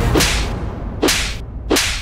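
Three sharp whoosh sound effects, one after another less than a second apart, the dramatic swishes laid over reaction shots in a TV serial, while the background music drops away.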